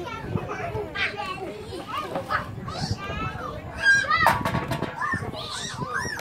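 Young children's high-pitched voices, calling out and squealing as they play, overlapping in short bursts, with a couple of sharp knocks about four seconds in.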